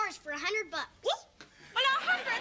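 Speech only: a girl's voice talking in short, uneven bursts, with a brief pause before another voice comes in near the end.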